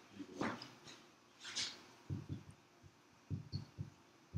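Marker writing on a whiteboard: a quick run of short, dull taps and strokes from about two seconds in, after a couple of soft, breathy noises.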